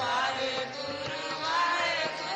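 Devotional Sikh Naam Simran chanting: a voice sings with gliding pitch over steady held accompanying tones.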